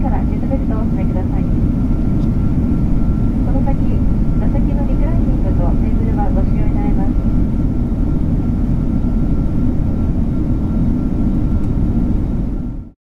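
Airliner cabin noise in cruise: a steady low rumble of the engines and airflow, with a faint steady whine above it. Faint voices come through early on and again from about four to seven seconds in.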